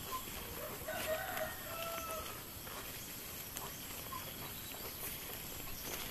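A rooster crowing once, faintly, about a second in.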